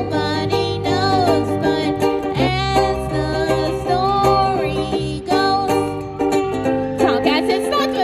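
A country-pop song played live: a woman singing long, wavering notes over a strummed small acoustic string instrument and an electric bass guitar.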